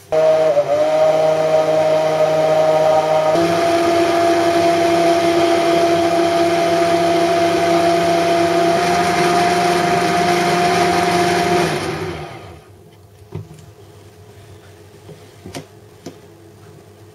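Hand-held immersion blender running in a plastic beaker of evaporated milk, whipping it to beat air in. A loud, steady motor whine whose pitch shifts slightly twice, cutting off about twelve seconds in, followed by a few faint knocks.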